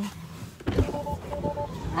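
Low rumbling noise inside a car as someone moves about in the seat, with a steady two-note electronic beep sounding twice in the middle.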